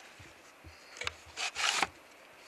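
Wooden plate holder of a large-format camera being handled and opened: a click about a second in, then a short scrape of wood rubbing on wood.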